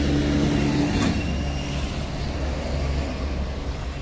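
A steady low mechanical drone, like an engine or motor running.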